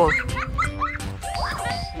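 Background music with steady held notes, with several short, high-pitched vocal squeaks from a young child in the first second and again near the end.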